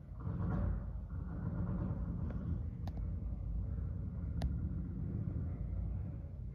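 A low, steady rumble with two faint clicks about a second and a half apart midway through.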